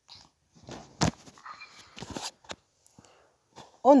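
Water poured from a cup over freshly steamed barley couscous grits in a bowl, with a sharp knock about a second in.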